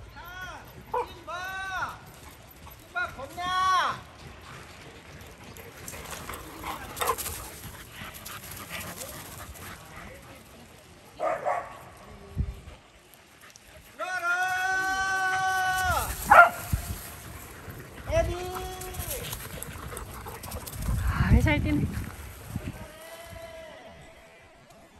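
Dogs barking and yelping in short, arched calls: a quick run of them in the first few seconds and a few more later on. About halfway through comes one long drawn-out call lasting a couple of seconds.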